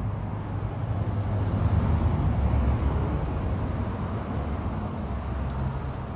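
Steady low rumble of distant road traffic, swelling a little about two seconds in and easing off again.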